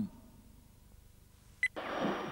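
A single short electronic beep from a TV remote control near the end, followed at once by the hiss of television static as the set comes on.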